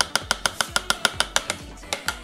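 A fast run of sharp clicks, about eight a second for a second and a half, then one more near the end, over soft background music.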